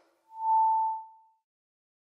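A single steady electronic tone, about a second long, that swells in and fades away: the short audio sting of a channel's logo end card.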